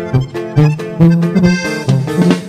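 Norteño music instrumental passage: a button accordion plays a quick run of notes over a bass line pulsing about twice a second.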